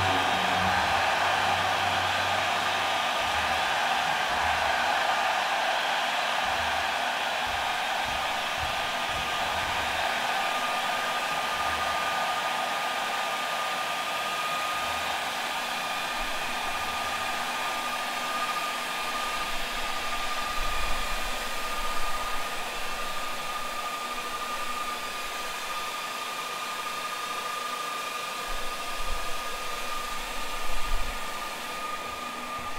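Several handheld leaf blowers running together: a steady rush of blown air that slowly fades, with a high motor whine coming in about ten seconds in. A few dull thumps in the second half.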